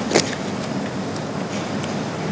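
Steady hiss of the broadcast's background noise, with no speech and a brief faint sound about a fifth of a second in.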